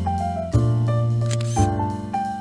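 Background music, with bass notes and chords changing about once a second. A camera shutter click sounds just past halfway.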